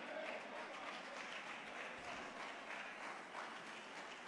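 Congregation applauding: an even, steady patter of many hands clapping.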